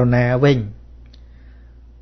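A Buddhist monk's voice speaking a short phrase in Khmer, then a pause broken by one faint click a little after a second in.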